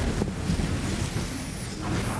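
Steady low background noise in a meeting room, with light knocks and rustling as people move around a table and handle papers.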